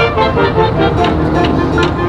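Marching band playing its field show: brass and winds holding sustained chords, with sharp percussion strikes coming in from about a second in.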